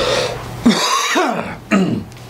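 A man's wordless vocal noises, throaty and gliding in pitch: a longer one about a third of the way in and a short one near the end.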